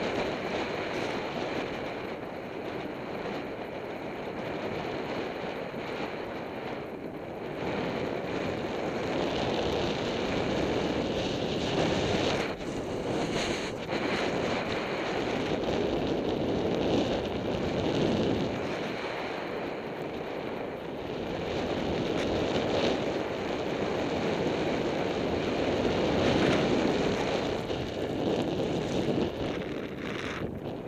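Wind rushing over the camera microphone, with a snowboard sliding and carving on groomed snow. It is a steady rush that swells and eases every few seconds.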